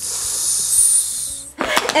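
A person imitating a snake's hiss: one long 'ssss' of about a second and a half, cut off by speech.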